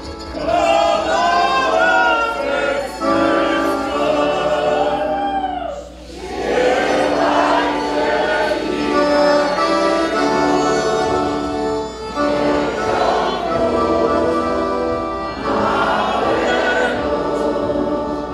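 A large group of voices singing a Polish Christmas carol (kolęda) together, accompanied by violin and accordion, in long held phrases with a brief break about six seconds in.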